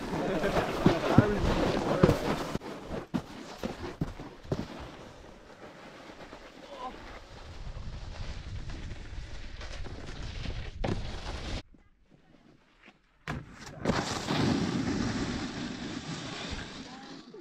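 Snowboard sliding over packed snow: a steady scraping hiss with wind buffeting the camera microphone and sharp knocks in the first few seconds. The sound drops out for over a second near the end, then the scraping resumes.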